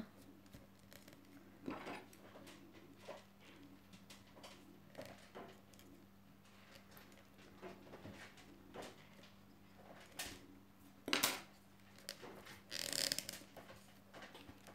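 Faint rustling and light clicks of rolled newspaper tubes being handled and tucked into a weave around a glass jar, with a sharper click about 11 seconds in and a louder scraping rustle near the end.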